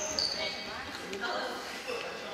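Badminton hall sounds: a few sharp racket-on-shuttlecock hits and short high squeaks of shoes on the wooden court floor, with voices from around the hall.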